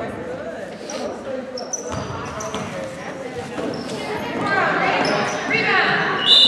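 Basketball bouncing on a hardwood gym floor during play, with short high sneaker squeaks and people's voices calling out near the end.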